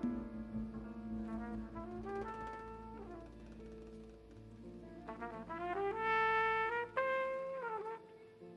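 Jazz trumpet solo over a quiet band backing: phrases of stepping notes that climb, a loud held high note about six seconds in, then a held note that bends down near the end.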